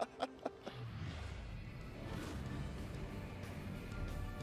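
TV sports-show bumper music with a deep bass, coming in about a second in after the tail of a spoken line.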